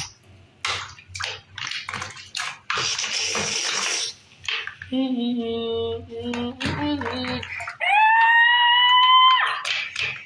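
Water splashing and sloshing in a soapy bathroom sink as toy figures are pushed through it, in short irregular bursts. Then a child's voice laughs and, near the end, holds one long high-pitched note.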